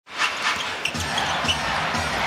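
Basketball dribbled on a hardwood court, bouncing about twice a second over the steady noise of an arena crowd.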